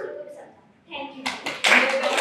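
A girl's last few spoken words, then a group of students applauding, starting about a second in and quickly getting loud.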